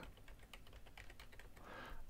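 Faint, quick keystrokes as an eight-character password is typed in.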